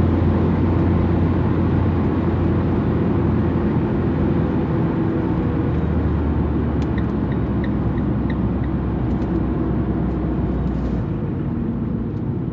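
Engine and road noise inside a moving van's cabin: a steady low drone that drops in pitch about halfway through and eases off near the end. A short run of light, evenly spaced ticks comes just after the drop.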